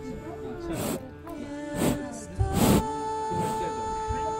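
Background music with long held notes. Over it, a calf snuffles at the microphone: three short noisy breaths, the loudest about two and a half seconds in.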